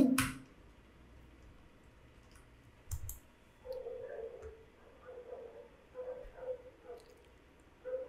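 A computer mouse click about three seconds in, with a few faint ticks around it, as a password is pasted and confirmed in a login dialog. In the second half a faint low hum comes and goes.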